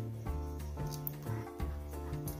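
Soft background music with sustained, held notes, and a few faint clicks from the plastic figure being handled.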